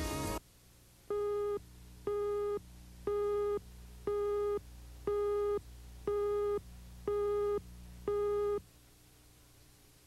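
Countdown beeps on a broadcast tape leader: eight short identical beeps, one a second, each about half a second long at a single mid pitch, over a faint low hum.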